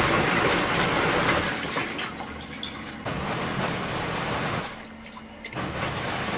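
Zeny mini portable washing machine in its wash cycle, water and clothes churning in the tub: a steady rushing slosh that dips briefly about five seconds in.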